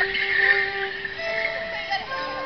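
Live Morris dance tune played on a melody instrument, held notes stepping from one to the next, with the jingle of the dancers' leg bells over it.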